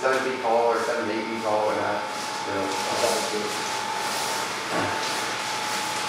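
Battery-powered blower fan of an inflatable T-Rex costume running steadily, keeping the suit inflated. It gives a constant thin whine and an airy hiss that grows stronger about two seconds in.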